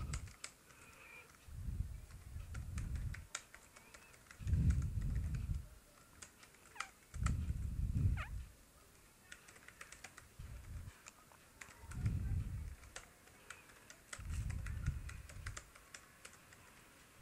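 Typing on a computer keyboard, irregular single keystrokes with short pauses. Under it, a low rumble swells and fades about every two to three seconds, each lasting a second or so.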